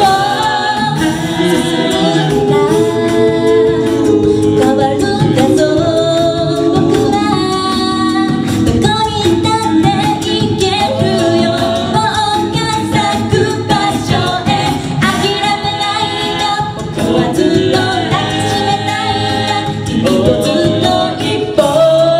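A mixed group of male and female voices singing a song a cappella through microphones, in several-part harmony.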